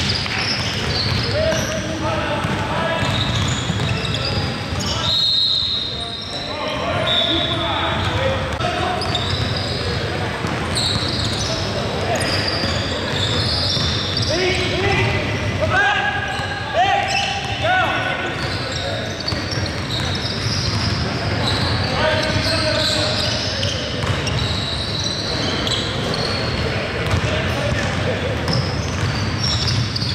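Live basketball play on a hardwood gym floor: the ball dribbling, sneakers squeaking in short sharp bursts, and players calling out, all echoing in the large hall.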